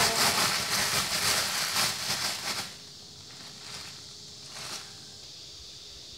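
Thin plastic bag crinkling and rustling as it is handled, for about the first two and a half seconds; after that only a faint hiss with a couple of soft rustles.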